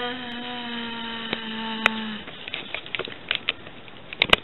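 A girl's voice holding one long 'aah' at an even pitch, ending about two seconds in, followed by light rustling and clicks of handling.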